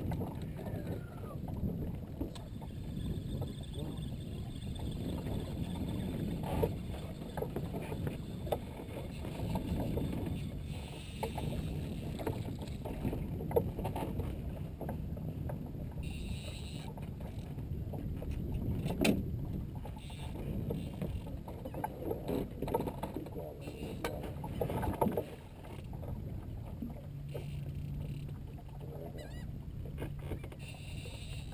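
Low, steady rumble of wind and water around a small open fishing boat on the bay, with a few sharp knocks on the boat about halfway through and a steady low hum near the end.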